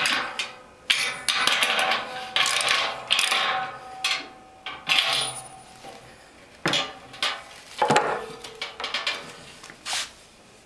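A run of separate metal clinks and knocks, several ringing briefly, from a 7/8-inch deep socket wrench tightening the terminal nuts of an electric boil-kettle heating element.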